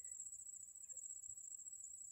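Faint room tone with a thin, steady high-pitched tone running throughout.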